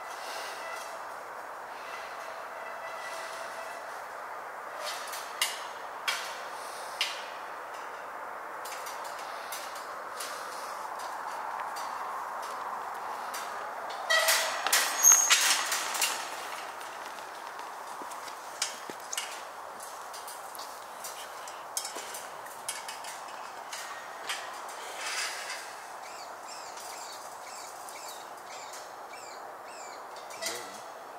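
Steel temporary-fence gate being worked open: about halfway through, a burst of metal rattling and scraping with a short squeal. A few sharp clicks before it and scattered lighter clicks after it, over a steady faint hiss.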